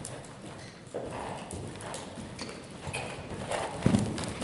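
Hoofbeats of a saddled horse cantering on the sand footing of an indoor arena: a quick, uneven run of dull thuds that is loudest near the end, as the horse passes close.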